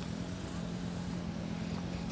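A car engine running with a steady low hum at low revs, under a faint haze of outdoor noise.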